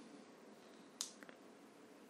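A single sharp click about a second in, then two faint ticks, from the plastic charging case of i500 TWS clone AirPods being handled in the fingers while the pairing button is sought. Otherwise near silence.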